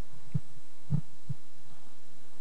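Three dull, low thumps about half a second apart, footsteps of a person walking down stairs.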